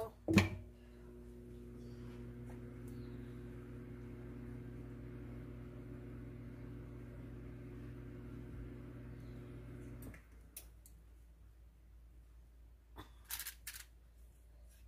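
A sharp click, then a steady electrical hum with several evenly spaced tones that cuts off suddenly about ten seconds in; a few light clicks and knocks follow near the end.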